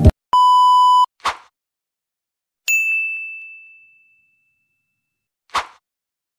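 Sound effects for an on-screen subscribe-and-like animation: a steady electronic beep lasting under a second, a short rush of noise, then a bell-like ding that rings out and fades over about a second and a half. Another short rush of noise comes near the end.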